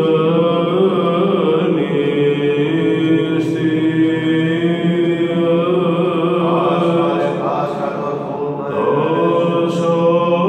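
Solo male Byzantine chant: a cantor sings a slow, melismatic hymn line with wavering ornaments on long held notes, over a steady low held tone.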